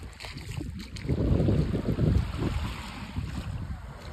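Wind buffeting the phone microphone in low rumbling gusts, strongest for about a second and a half starting a second in, over small waves lapping on the sand.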